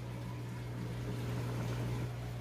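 Aquarium filters and pumps running in a fish room: steady water trickling and bubbling over a low electrical hum.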